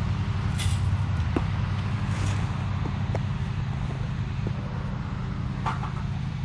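A lawn mower engine running steadily, a low even drone, with a few light clicks and two short rustles over it.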